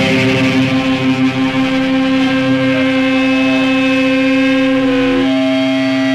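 Doom-metal band's distorted electric guitars ringing out a loud, steady drone of held notes, with no drum strikes; the held notes change pitch about five seconds in.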